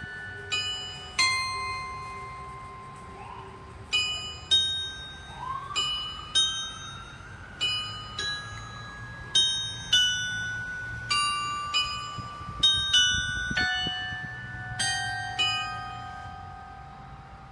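Clock tower chimes playing a slow melody: single struck bell notes one after another, each ringing on and fading as the next sounds.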